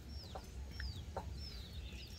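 Faint chicken calls: three short, high peeps, each falling in pitch, spread across two seconds, with a few soft clicks between them.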